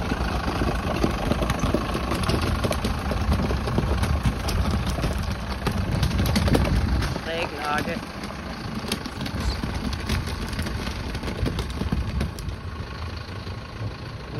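Mercedes Vario 818 truck crawling over a stony riverbed: its diesel engine runs while the stones crack and pop under the tyres. The engine sound drops noticeably about seven seconds in as the truck moves away.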